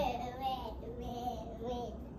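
Faint high-pitched singing: a soft, held, slightly wavering melody.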